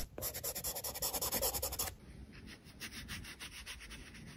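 A pencil scratching on textured paper in rapid back-and-forth shading strokes. After about two seconds the strokes carry on more faintly.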